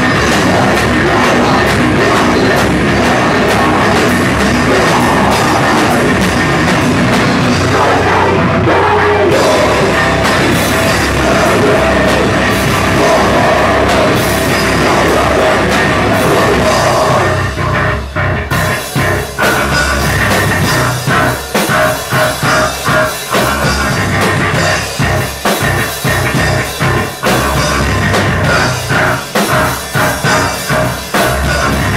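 Live rock band playing loud and heavy on drum kit and electric guitar. About eighteen seconds in, the dense full sound breaks into a choppy stop-start section of staccato hits with short gaps between them.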